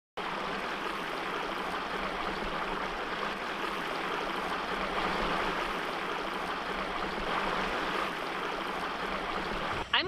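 Small creek running in a shallow riffle over rock ledges: a steady rush of water that stops just before the end.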